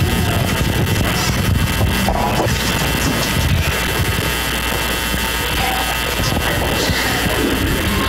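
The worship band's instrumental ending after a song: a sustained low note and lingering instruments under a dense, even wash of noise.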